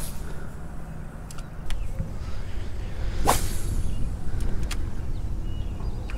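Rod and reel fighting a hooked bass: a low steady rumble with a few faint clicks and one sharp swish about three seconds in.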